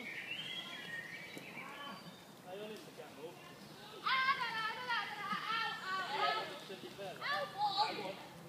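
Children shouting and calling out in high voices as they play, loudest from about four seconds in, with another burst of shouting near the end.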